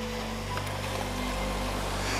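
Steady wash of small waves breaking on a sandy beach, with a soft, held background-music chord underneath.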